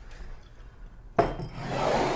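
Glass bottle scraping across a wooden tabletop: a rubbing scrape that starts suddenly just over a second in and grows louder.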